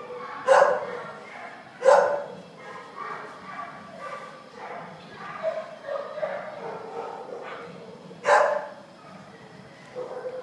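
A dog barks three times, sharp single barks: two in the first two seconds and one more near the end.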